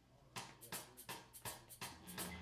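Faint electronic percussion ticking out a steady beat, about four sharp clicks a second, starting about a third of a second in: the count-in of the song's intro.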